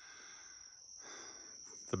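Faint, steady chirring of crickets: one high, unbroken tone over quiet outdoor background.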